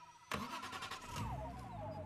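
Car engine starting: a sudden start about a third of a second in, then a low steady rumble as it idles. A warbling whine runs over it.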